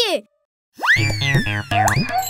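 After a brief silence, a cartoon sliding-whistle sound effect rises quickly and then glides slowly down, over background music with a steady low bass that starts about a second in. A second quick rising swoop comes near the end.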